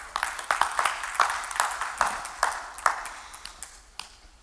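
Scattered hand claps from a few people in the congregation, several a second and irregular, thinning out toward the end.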